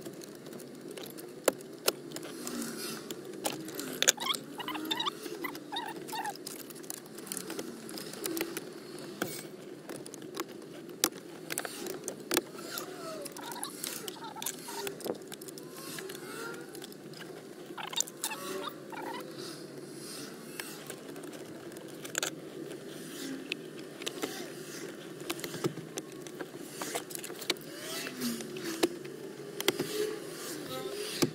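Irregular sharp clicks, taps and knocks of plastic dashboard trim and wiring-harness connectors being handled, over a steady low background noise.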